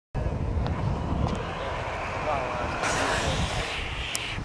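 Outdoor background noise picked up by a camcorder's microphone: a steady rumble of wind or distant traffic with faint voices in it, cutting in suddenly from silence.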